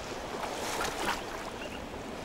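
Fast-flowing, churning river water washing against a rocky edge, with a few light splashes about half a second to a second in.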